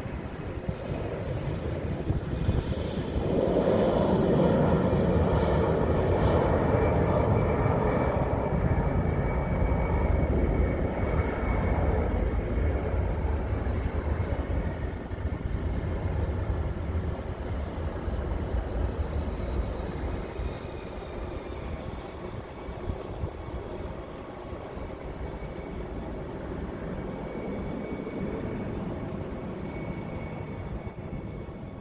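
Jet aircraft engine roar at an airport, building over the first few seconds, at its loudest for several seconds, then slowly fading, with a faint steady whine above the rumble.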